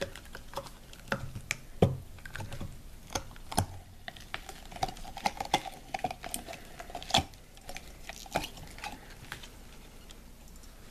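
Irregular clicks and taps of a glazed ceramic skull being pried and popped out of a silicone rubber mold by hand, the silicone snapping and rubbing against the ceramic.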